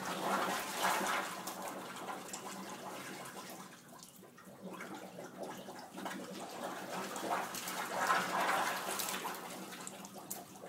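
Sewage backflow gurgling and gushing up out of a wall-mounted drinking fountain's drain and spilling onto the floor, swelling in two louder surges, about a second in and again near the end. The sewer line is overloaded by a downpour and has no backflow valve.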